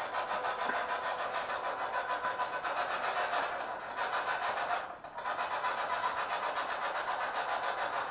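Steady hiss of static with a fast, even pulsing and a faint steady tone in it, dipping briefly about five seconds in.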